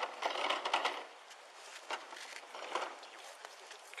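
Rustling and handling noise of paper on a clipboard, picked up close to a body-worn camera's microphone. It is loudest in the first second, then fainter, with a few brief scratches.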